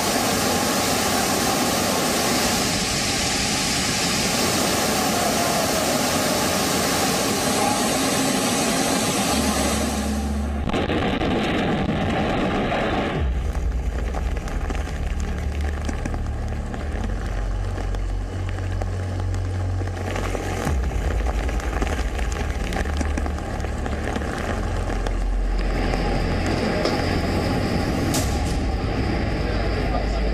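Floodwater gushing down into a flooded subway station, a loud, even rush of water, for about the first ten seconds. The sound then changes to a heavy low rumble under a lighter rushing hiss.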